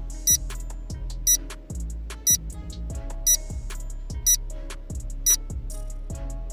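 Countdown timer sound effect: a short, high beep once a second, six times, over steady background music.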